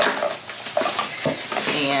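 Clear plastic bag crinkling and rustling as it is handled, with many small crackles.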